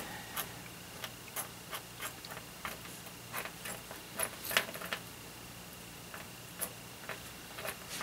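Small metal screws clicking against one another as fingers sift and push them around in a pile on paper. The clicks are light and irregular, a few of them sharper than the rest.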